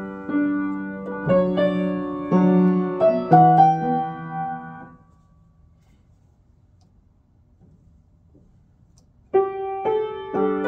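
Steinway grand piano playing improvised chords, several struck one after another and left to ring and die away over the first five seconds. A pause of about four seconds follows, then chords start again near the end.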